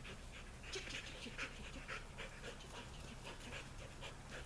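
A dog panting quickly and rhythmically, about four breaths a second.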